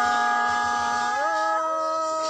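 A voice singing one long drawn-out note in the held style of Thái folk song, stepping up in pitch a little past a second in.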